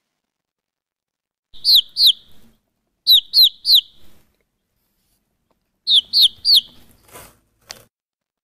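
Baby chicks peeping: three groups of two or three short cheeps that fall in pitch, spaced about a third of a second apart. Near the end there is a brief hiss and a click.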